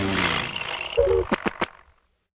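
The tail of a produced intro soundtrack: a voice-like sound falling in pitch and dying away, a brief high tone, a short pitched note, then three quick clicks, fading out to silence.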